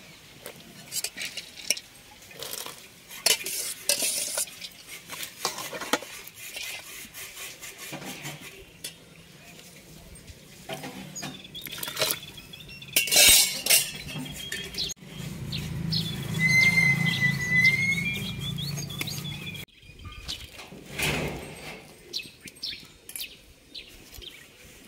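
Garlic cloves and a handful of split lentils dropped by hand into an aluminium pot of hot water: small clinks and splashes early on, then a brief rushing splash as the lentils pour in about halfway through. A bird chirps a little later.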